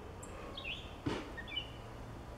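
A few faint, brief high chirps, bird-like, over a steady low hum.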